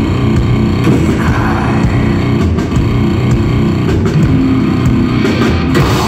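A hardcore punk band playing live and loud: distorted electric guitar and bass driving over a drum kit with repeated cymbal and drum hits.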